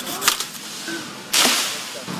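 Hand pruning shears snipping leafy branches of a downed tree: two sharp clicks, then about a second and a half in a loud swish and rustle of leaves that fades away.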